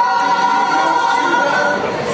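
Mixed folk choir singing unaccompanied, holding one long chord that is released near the end before the next phrase begins.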